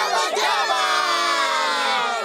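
A group of voices cheering as the song's beat stops, with the last musical note fading and sliding down beneath them.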